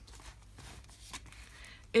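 Faint handling noise as a pen is pulled out of a ring binder's pen loop, with a couple of soft ticks.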